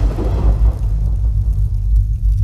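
Deep sub-bass rumble from an electronic dance-music intro. The higher sounds fade out over the first second, leaving mostly the low bass.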